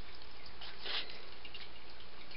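Low, steady background hiss, with one faint, soft, brief sound a little under a second in.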